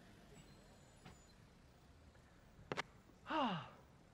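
Faint room tone, broken about two and a half seconds in by a sharp knock, then a man's long sigh that falls in pitch near the end.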